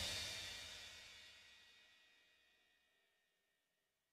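The final chord of an instrumental MIDI karaoke backing track, with a cymbal, ringing out and dying away about a second in.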